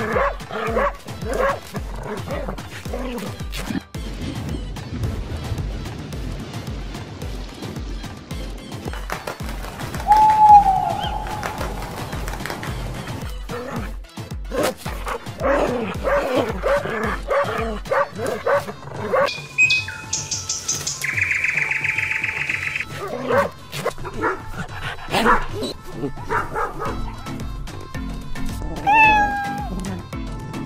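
Dogs and puppies yipping and barking over background music with a steady low beat, with one loud short falling yelp about ten seconds in.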